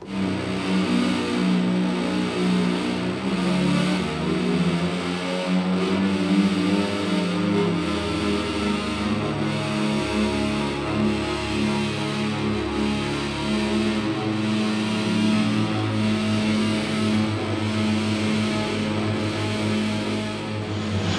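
Heavy electronic bass drone from a hand-worked motorized throttle bass controller: several layered low tones held and shifting in pitch in steps as the levers are moved, starting abruptly.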